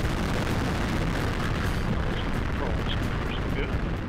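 Atlas V 401 rocket's RD-180 main engine running at full thrust during ascent: a steady, deep rumbling roar.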